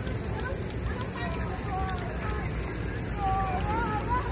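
Splash-pad water jets spraying with a steady hiss, with faint voices calling in the background.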